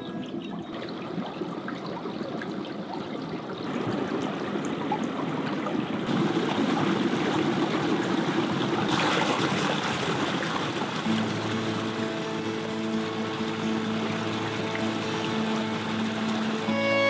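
Small snowmelt forest creek running and trickling over ice and stones, the water louder from about six seconds in. Sustained string music comes in over the water about two-thirds of the way through.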